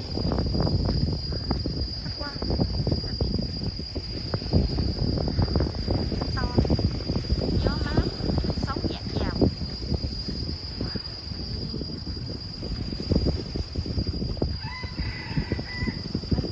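Gusty wind buffeting the microphone, over a steady high-pitched insect drone. Several short bird chirps come in the middle, and a longer call, like a cock crowing, near the end.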